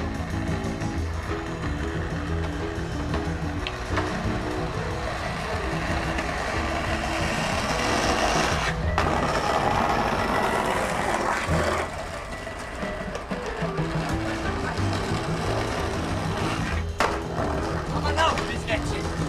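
Background music with a walking bass line. Over it, a skateboard rolling and grinding on a stone ledge makes a rough scraping noise from about six seconds in to about eleven seconds, with sharp clacks of the board near four seconds and near seventeen seconds.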